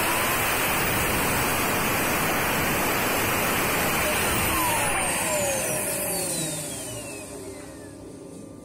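Turbocharger core spun by compressed air on a high-speed balancing rig: a loud steady rush of air with a high whine. About five seconds in the drive is cut and the rotor winds down, its whine falling steadily in pitch as the sound fades.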